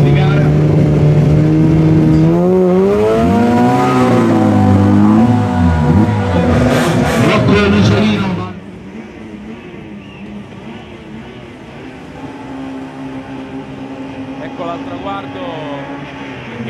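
Peugeot 106 Group N slalom car's engine idling, then revved up and down in repeated blips at the start line. About eight and a half seconds in, the sound drops off sharply and the engine runs on more faintly with a steadier note as the car drives off.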